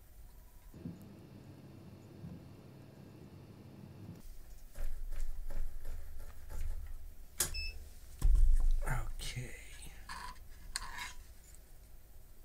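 Workbench handling noises as the soldering iron is taken away and the circuit board is picked up off the mat: scattered knocks and rustles, a sharp click about seven seconds in and the loudest thump about a second later. Before the handling starts, a low steady hum for about three seconds.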